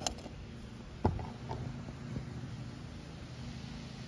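Small metal finds being handled in a metal mint tin: one sharp tap about a second in and a few lighter clicks, over a steady low hum.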